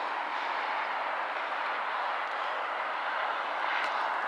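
Steady, even rush of distant vehicle noise.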